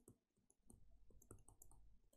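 Faint, quick clicks of a stylus tapping on a tablet screen while an equation is handwritten, a run of small ticks beginning about half a second in.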